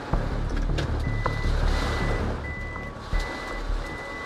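Truck rumbling as it drives over storm debris, while an electronic alert beeps repeatedly, about one and a half beeps a second, starting about a second in. Partway through, a steady lower tone joins the beeping.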